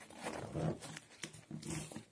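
Zipper on a grey fabric bag pulled along by hand in short, slow tugs, giving a rasping purr in three spurts.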